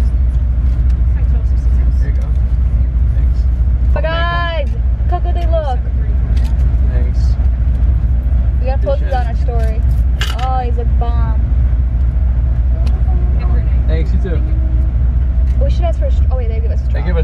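Car engine idling, heard as a steady low rumble inside the cabin. Faint, muffled voices come and go over it a few times.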